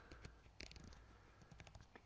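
Near silence with a few faint clicks in two short clusters, about half a second in and again around a second in, from the digital scope's controls being worked as its zoom is taken back.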